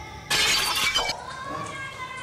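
A sudden crash of shattering glass about a quarter of a second in, lasting under a second, followed by a quieter held tone.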